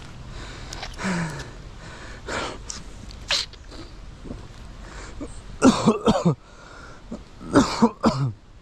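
A person coughing in short harsh bursts: a cluster of three or four coughs about two-thirds of the way in and two more near the end, with a few lighter ones earlier.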